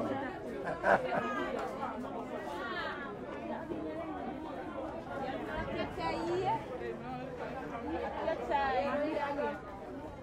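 Crowd chatter: many people talking at once, with a laugh about a second in.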